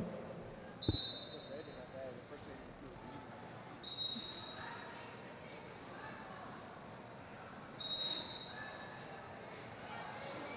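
Roller derby official's whistle blown three times, about three to four seconds apart, each a short high blast; the first marks the start of the jam. Faint hall noise runs underneath.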